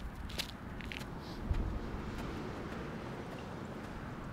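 Hands and feet of a person bear crawling, giving a few faint taps and scuffs on the ground, with one thump about a second and a half in, over a steady outdoor rumble.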